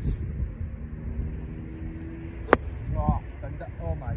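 A golf iron strikes the ball once with a single sharp crack about two and a half seconds in, over a low steady rumble of wind on the microphone.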